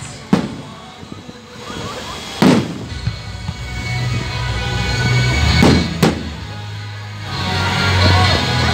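Fireworks shells bursting in sharp bangs with an echoing tail: one shortly after the start, one about a third of the way in, and a close pair about three quarters through. Music plays underneath.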